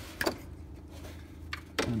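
A pause in talk: a faint steady low hum with a short click or two about a quarter second in, and a voice resuming near the end.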